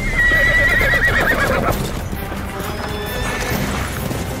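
A horse whinnying once: a long, wavering call that fades out after about a second and a half, over background music.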